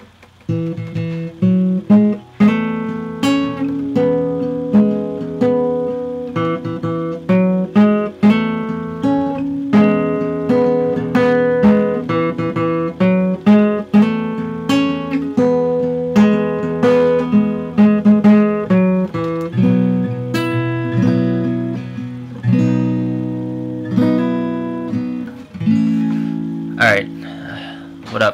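Acoustic guitar with its low string tuned down to D, fingerpicked in a repeating figure of plucked single notes, changing about twenty seconds in to fuller, longer-ringing chords.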